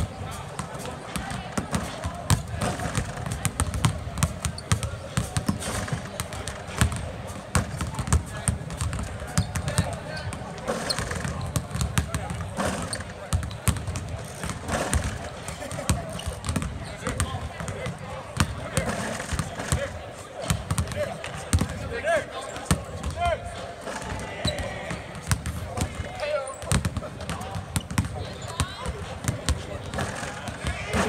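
Many basketballs bouncing on a hardwood court at once, a dense, irregular patter of overlapping thuds, with indistinct voices among them.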